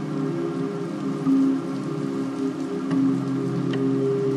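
Soft, slow ambient music with low chords held steadily, layered over an even rain sound.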